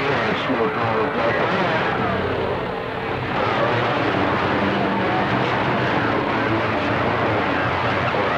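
A CB radio receiver on channel 28 carrying skip from distant stations: a steady rush of band noise with faint, overlapping voices that cannot be made out.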